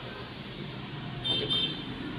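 Steady background traffic noise with a short, high-pitched double toot of a vehicle horn a little past the middle.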